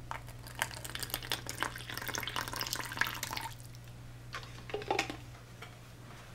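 Water pouring from a bottle into a small plastic cup water dish, splashing for about three and a half seconds. A few brief knocks follow near the end.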